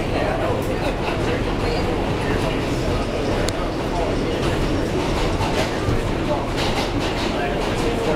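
New York City subway E train car running between stations, heard from inside the car: a steady rumble and rail noise with occasional faint clicks.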